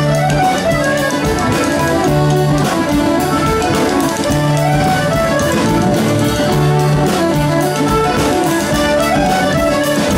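Live bush band instrumental break between verses: fiddle and accordion play the tune over acoustic guitar, bass and drums, with a steady beat.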